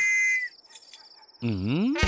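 A night watchman's metal whistle blown in one steady blast that stops about half a second in, with crickets chirring. Near the end a low pitched sound dips and then rises in pitch.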